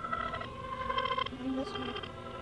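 Acer logo sound played in reverse and distorted with effects: a buzzy run of held electronic tones that change pitch every half second or so.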